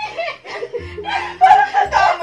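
A group of young women laughing together, with snatches of talk mixed in; the laughter grows loudest about one and a half seconds in.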